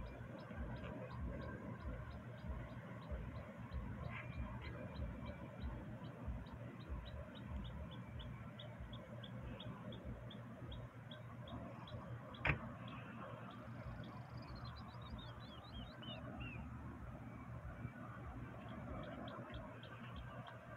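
A small bird chirping: a long run of short, high notes repeated at an even pace, then a quick falling series of notes a few seconds later. One sharp click about twelve seconds in, over a low rumble.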